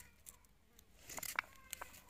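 A small knife cutting a peeled raw potato into cubes in the hand, with a few soft clicks in the second half.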